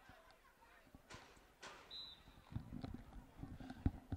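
Faint open-air ambience at a football field: scattered light taps and knocks, with a short high-pitched whistle tone about halfway through and a quicker run of taps near the end.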